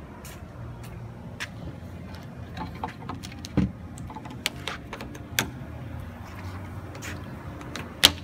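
Aluminium flatbed tailgate being raised and shut: scattered light clicks and knocks from the handling, one louder thump about three and a half seconds in, and a sharp snap at the very end as the rubber Jeep Wrangler-style latch is worked. A steady low hum sits under it all.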